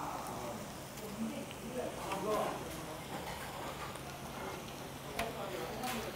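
A person chewing a mouthful of food close to a clip-on microphone: soft, wet mouth sounds with a few small clicks, over a faint steady hum.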